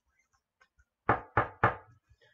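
Three quick, sharp knocks of hard plastic card cases against a tabletop, about a quarter second apart, as encased trading cards are handled and set down.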